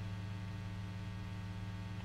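A steady low electrical hum, a few even tones held without change, with a faint hiss above it.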